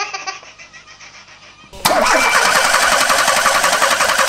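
A baby laughing in repeated giggles, then about two seconds in a VW Golf Mk2's engine starts and runs loudly and steadily.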